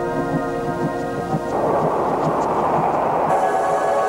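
Electronic title music: a held organ-like chord over a pulsing low note, which gives way about a second and a half in to a rushing wash of noise, with a sustained chord coming back in near the end.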